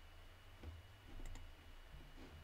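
Near silence: quiet room tone with a low steady hum and a couple of faint soft ticks.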